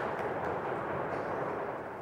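Large audience applauding steadily, many hands clapping at once.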